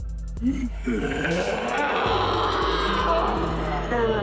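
A person vocally imitating a horrible scream: a brief rising cry about half a second in, then one long drawn-out wail that lasts about three seconds. Background music plays underneath.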